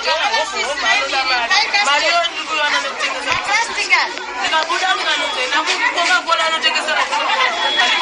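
A person talking steadily, the voice thin with the bass cut away, as from a phone or field recording.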